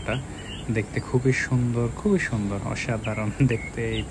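A steady high-pitched insect drone, typical of crickets, runs under people's voices talking indistinctly.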